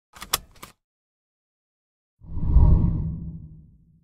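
Intro whoosh sound effect for an animated logo: a low, swelling rush that starts about two seconds in, peaks quickly and fades away. A few short clicks come at the very start.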